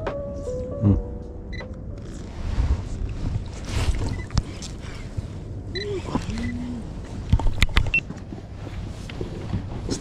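Handling noise on a fishing kayak as the angler strikes a fish with his rod: steady wind and water noise on the camera, then a cluster of sharp knocks about seven to eight seconds in. A brief musical sting fades out at the very start.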